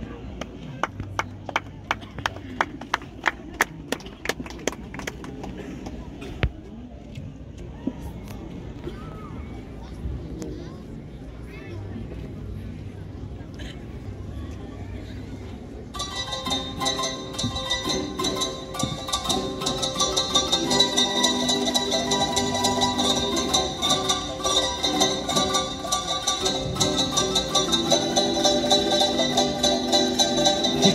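Crowd murmur with a run of sharp, evenly spaced knocks, about three a second, over the first several seconds. About halfway through the sound cuts abruptly to a Tahitian string band of ukuleles and guitars strumming, with singing, growing louder toward the end.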